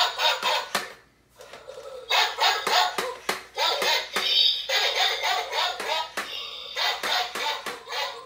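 Skeleton dog Halloween decoration playing its built-in sound effects through its small speaker, set off by a motion sensor. The sound cuts out briefly about a second in, then starts again.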